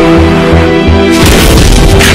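Dramatic film score music: held tones over a pulsing bass, broken about a second in by a loud cinematic boom. After the boom the music turns denser and more driving, with sharp percussive hits.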